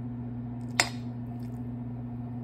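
A metal utensil stirring soft, cooked greens in a stainless steel frying pan, with one sharp clink against the pan a little under a second in. A steady low hum runs underneath.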